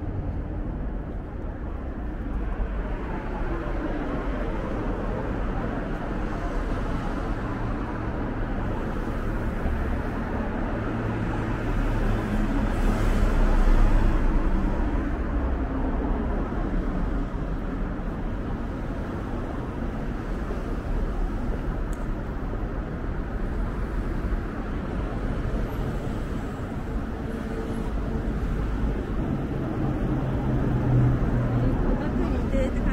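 Road traffic: cars passing on a busy city road, a steady rumble with one louder pass-by a little before halfway.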